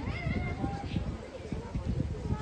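Indistinct voices of people gathered outdoors, with one high-pitched drawn-out vocal sound that rises and then holds near the start.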